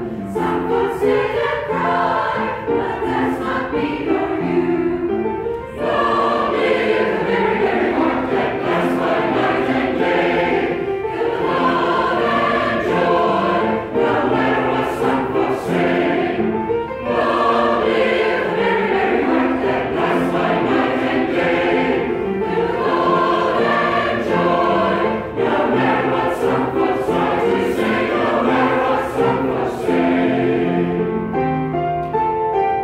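A men's choir singing in parts, in sustained phrases with brief breaks between them.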